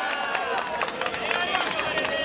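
Several people's voices calling out and talking over one another in a large hall, with scattered claps and sharp clicks.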